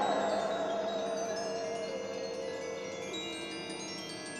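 Spooky background score: shimmering chimes under a single wavering tone that steps down in pitch a few times, slowly fading.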